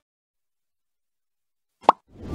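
Dead silence, broken near the end by one short, sharp pop of a sound effect: the first sound of a TV channel's closing ident.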